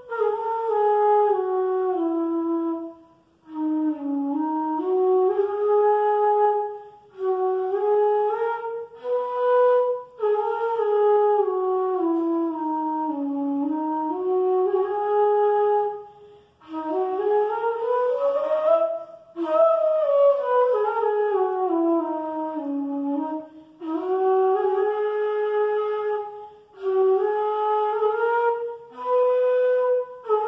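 Bansuri (Indian bamboo flute, an E flute) playing a melody in phrases of a few seconds, with short breath pauses between them. The notes slide smoothly from one to the next, climbing to the highest pitch about two-thirds of the way through and then falling back.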